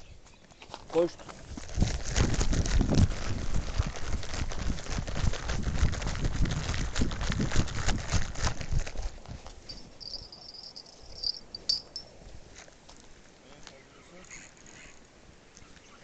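A person running on a gravel path with the camera, footsteps and camera jostling loud for about seven seconds, then slowing to quieter steps and handling noise.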